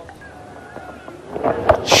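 Quiet cricket-ground ambience as the ball is bowled, then rising crowd noise and a single sharp knock near the end: the bat striking a short-pitched ball.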